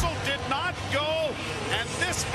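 Hockey broadcast commentator talking over the replay.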